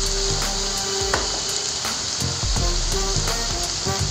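Chopped vegetables sizzling steadily in a hot kadai as tomato sauce is stirred in with a steel spoon.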